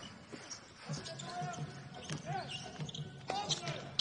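Basketball bouncing on a hardwood court as it is dribbled, a few separate thuds, with faint players' voices in the background.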